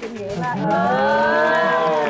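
A drawn-out approving 'ooh' from the women on the panel, one long vocal sound that rises and then falls in pitch.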